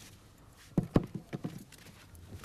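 A quick run of footsteps and sharp knocks on hard earth, five or six in a little under a second, starting about three-quarters of a second in and trailing off.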